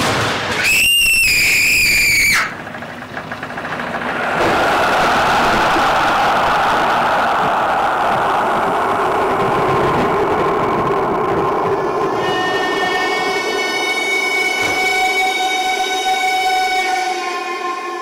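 Dramatic sound track over the hall's speakers: a loud, shrill, wavering whistle-like tone for under two seconds about a second in, then a long steady rumbling roar, with held musical tones rising over it from about twelve seconds in.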